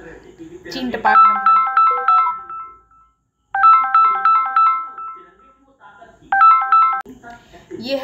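A phone ringtone: a quick run of repeated bright notes on three pitches plays twice in full, then starts a third time and is cut off after about half a second.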